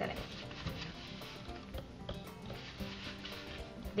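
Soft background music with steady held notes, over a faint rustle of fingers mixing wheat flour and water into crumbly dough in a plastic tub.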